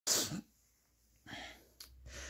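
A man's short, sharp exhaled burst of breath through the mouth, then a softer breath about a second later and a small click near the end.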